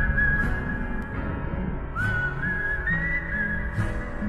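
Trailer music: a whistled melody in two short phrases, the second starting about two seconds in and sliding up at its start, over low sustained notes.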